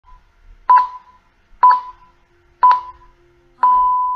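Four electronic beeps at the same pitch, about a second apart, the last one held longer: a countdown in the style of radio time-signal pips.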